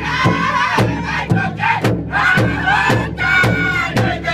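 Powwow drum group of men singing a crow hop song in high-pitched unison voices while beating a large powwow drum together about twice a second. The voices break off briefly about two seconds in and then come back in.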